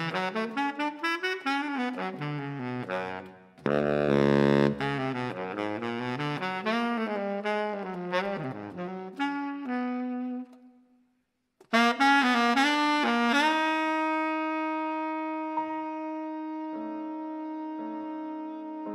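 Solo baritone saxophone playing a free, cadenza-like jazz ballad line alone, with quick runs and notes that bend and slide down into the low register. It breaks off for about a second, then comes back with a few notes into a long held note, with other notes joining under it near the end.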